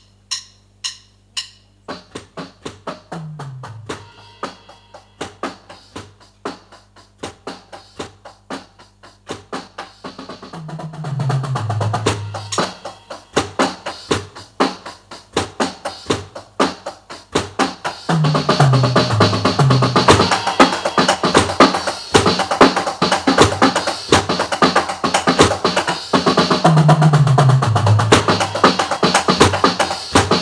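Drum solo on an electronic drum kit. It opens with a few ringing cymbal strikes, then sparse snare and kick hits build into fills, with tom runs falling in pitch four times. About two-thirds through, the playing gets louder and much denser.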